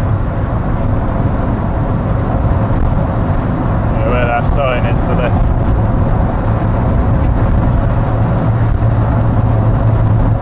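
Car engine and road noise heard from inside the cabin while driving along at a steady speed, a constant drone with a low hum. About four seconds in, a voice is heard briefly for about a second.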